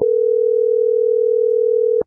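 A loud, steady electronic beep at one mid pitch, held for about two seconds and cut off abruptly.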